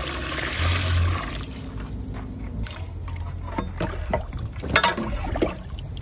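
Water poured from a jug into a pot of mutton curry, the pour stopping a little over a second in. Then scattered short pops as the pot heats over a wood fire.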